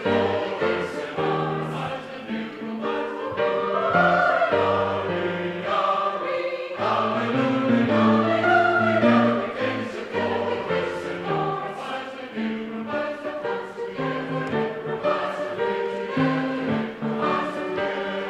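Mixed choir of men's and women's voices singing in harmony, in held phrases that swell and fade in loudness.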